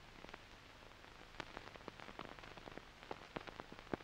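Faint, irregular clicks and crackle over a low hiss and hum, the clicks coming thicker from about a second and a half in: surface noise of an old 16mm film soundtrack running on a black screen.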